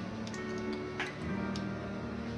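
Background music with held notes and a few light clicks, the sharpest about a second in.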